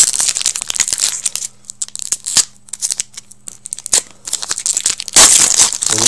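Foil wrapper of a hockey card pack being torn open and crinkled by hand, a dense crackling with a louder rip near the end.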